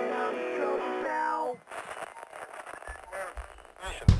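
Rock song with guitar picking a line of notes that ends about one and a half seconds in. A quieter, sparser stretch follows, with a few low bass notes near the end.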